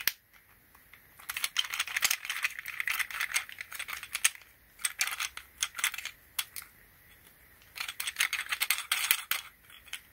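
Plastic swivel head of a handlebar camera mount being turned by hand, clicking rapidly as it rotates, in two long runs of clicks with a few single clicks between.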